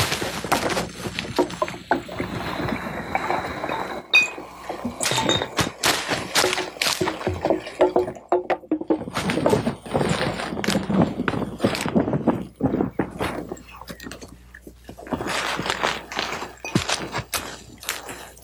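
Irregular knocks, thuds and clatter of camp gear being gathered up and packed in a hurry.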